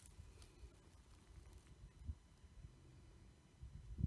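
Near silence: a faint low rumble with a few soft thumps and clicks, the loudest just before the end.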